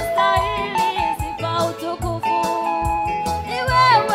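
A woman singing a gospel worship song with a live band, including bass guitar, behind her. She holds long notes, with a falling slide near the end, over a steady beat.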